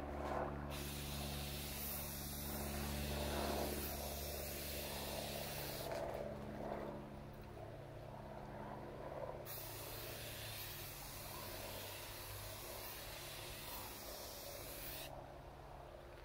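Rust-Oleum aerosol spray paint can hissing as paint is sprayed in passes across a board, in two long bursts that start and stop sharply, with a pause of about three seconds between them.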